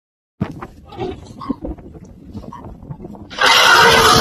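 Soft scattered animal calls, then a loud, rough elephant trumpet starting about three and a half seconds in and lasting about a second.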